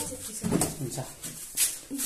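A cat mewing: two short bouts of whiny calls.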